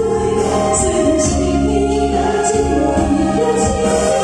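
A woman singing a ballad live into a microphone over loud amplified music, heard through the PA.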